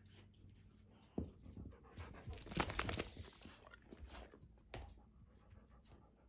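Two chocolate Labradors tussling over a rag in play. About a second in there is a sharp knock. Around the middle comes a louder burst of noise lasting under a second, followed by smaller scuffling noises.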